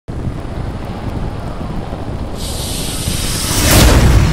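Cinematic intro sound effect: a low rumble, joined about two and a half seconds in by a hissing rush that swells into a loud burst near the end.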